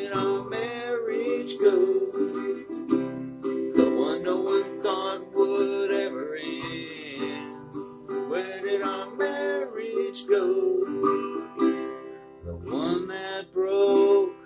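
Electric guitar playing a slow song, with a man's voice singing held, gliding notes over it in places.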